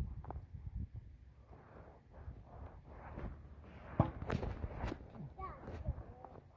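Low wind and handling rumble on a phone microphone, with a single sharp knock about four seconds in: a plastic toy bat hitting the ball. Short bits of voice come near the end.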